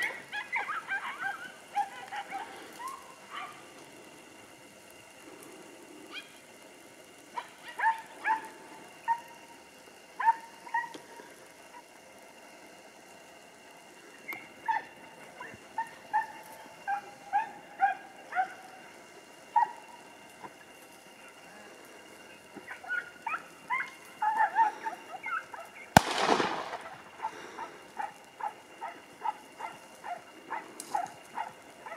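Podenco hounds giving tongue in quick runs of short, pitched yelps while trailing a rabbit through thick cover. One sharp bang a few seconds before the end is the loudest sound.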